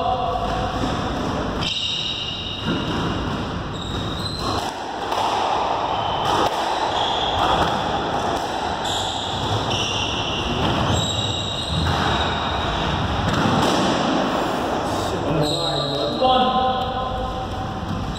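Squash rally: the ball struck repeatedly by rackets and smacking off the court walls, with short high squeaks of players' shoes on the court floor.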